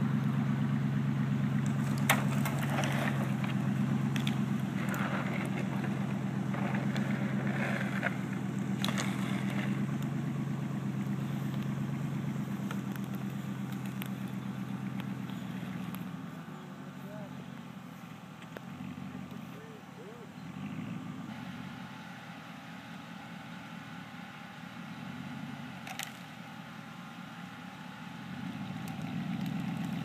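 Chevy Silverado pickup's engine running as it tows a fallen tree trunk across the grass on a rope. It is loud for the first half, fades about halfway through as the truck pulls away, and comes up again near the end.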